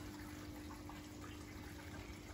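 A water-wall feature with a curtain of water falling steadily in thin streams into its trough, a continuous trickle of falling water, with a steady low hum underneath.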